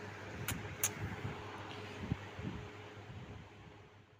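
A golden retriever moving about on a marble floor: two sharp clicks about half a second and a second in, and a few soft thumps, over a steady low room hum.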